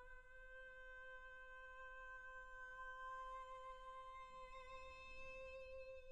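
Solo soprano voice softly holding one long, steady sung note with almost no vibrato, a slight waver creeping in near the end.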